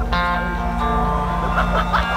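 Live metal band playing through a festival PA, electric guitar and bass carrying a sustained passage between sung lines, with audience voices near the microphone.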